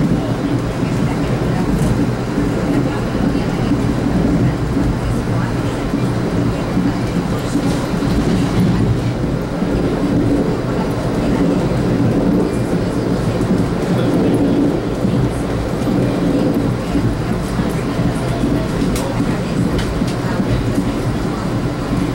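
Steady interior rumble of a 1982 Comet IIM passenger coach rolling at speed over the rails, with a few faint clicks.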